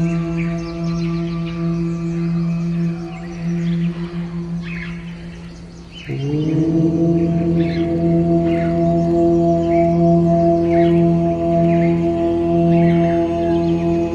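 Meditation music built on a deep, sustained Om drone that fades away. About six seconds in, a new drone swells in with a slight rise in pitch as it settles, while birds chirp over it.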